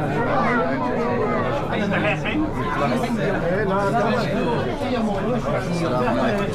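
Many men talking at once in a crowded room: overlapping chatter with no single voice standing out.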